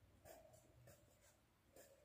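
Faint scratching of a pen writing on paper in a textbook, in a stretch that is otherwise near silence.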